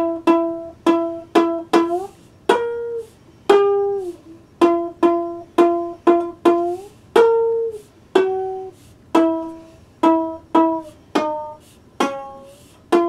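C.B. Gitty one-string diddley bow being plucked and played with a slide: about twenty single notes in an uneven, improvised rhythm. Each note rings briefly and dies away, and several bend or glide in pitch as the slide moves along the string.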